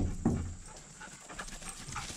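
Items being handled in a cardboard box set close to the microphone: a thump right at the start and another a quarter second later, then light clicks and rustling.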